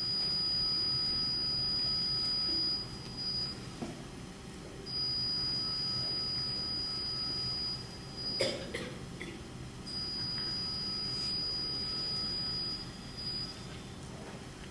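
Three long, steady, high-pitched electronic tones, each lasting about three and a half seconds with short gaps between them, and a single sharp click about halfway through.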